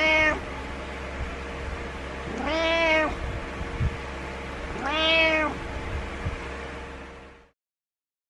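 Domestic cat meowing to get its owner out of bed: a short meow right at the start, then two longer meows about two and a half seconds apart, each rising and then falling in pitch.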